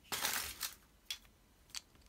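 Green plastic toy capsule from a chocolate egg handled in the fingers: a short scraping rustle just after the start, then two light clicks of hard plastic.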